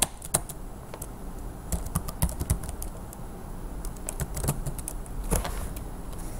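Typing on a computer keyboard: irregular keystroke clicks in short runs, with a brief pause around the middle.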